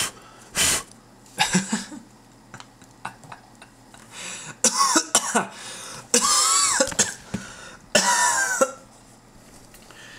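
A man coughing in three fits, around five, six and eight seconds in, in the smoke of burning paper. Before that come a few short sharp puffs of breath.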